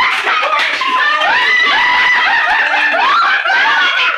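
Several girls laughing and shrieking together, loud, high-pitched and overlapping without a break.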